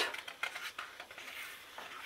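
Faint paper rustling and light handling of a hardcover picture book as a page is turned by hand.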